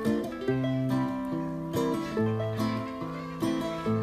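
Acoustic guitar playing a short passage of chords with no singing, a new chord or note struck every half second to a second.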